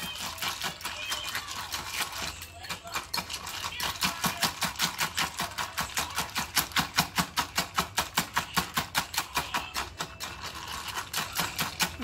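Small wire whisk beating eggs in a mug, its wires clicking against the sides in a fast, steady rhythm of about five strokes a second. The strokes pause briefly about two and a half seconds in and are loudest through the middle.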